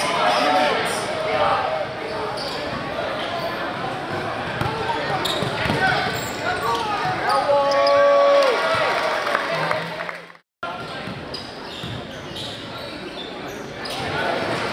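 Basketball game sound in a gym: a ball bouncing on the hardwood court amid a steady murmur of crowd voices. A loud drawn-out call rises over it about eight seconds in, and the sound drops out for a split second about ten and a half seconds in.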